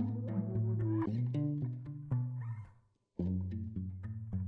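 Background music with steady bass notes, cutting out briefly about three seconds in.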